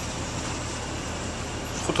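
Steady engine hum and road noise heard inside a bus cabin.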